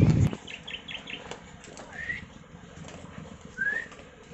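Quiet outdoor ambience with a few faint short bird chirps, two of them rising in pitch, after a brief low bump with a click at the very start.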